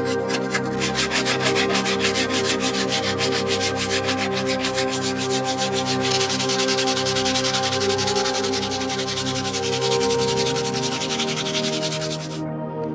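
Quick repeated scraping strokes of a metal blade shaving curls off a wooden block, changing about halfway through to steadier sanding of the wood's edge with a sanding stick. Ambient background music runs underneath.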